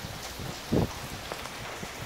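Steady rain falling on wet ground and a car, with one short low thump a little under a second in.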